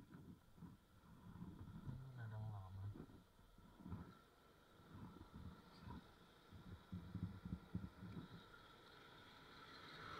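Faint, muffled rumble and buffeting from a moving motorbike, coming in irregular bursts, with a brief low hum about two seconds in.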